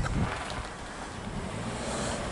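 British Airways Airbus A320-232 jet airliner, with IAE V2500 turbofan engines, passing high overhead on descent: a steady, distant low rumble. Wind buffets the microphone at the start.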